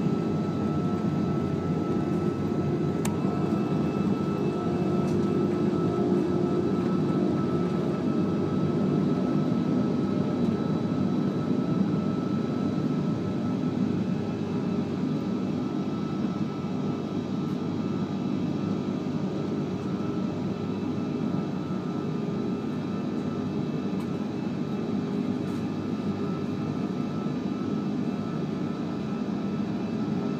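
Cabin noise of an Airbus A340-600 climbing after takeoff: the steady rumble of its four jet engines and the rushing air, with a faint steady whine. It grows a little quieter about halfway through.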